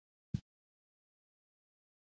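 Dead silence, with the audio fully cut out, broken once about a third of a second in by a brief blip lasting less than a tenth of a second.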